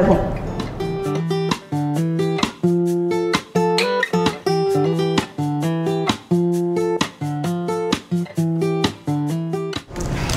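Background music: an acoustic guitar strumming chords in a steady rhythm.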